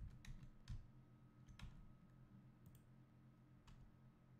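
Faint, scattered clicks of a computer mouse and keyboard, about six in all, over a low steady hum of room tone.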